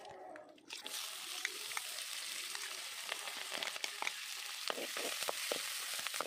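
Peanuts frying in hot oil in an iron kadai: a steady sizzle with scattered crackles, starting just under a second in.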